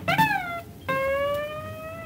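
Background music on guitar played with sliding notes: a note bending downward at the start, then about a second in one long note gliding slowly upward.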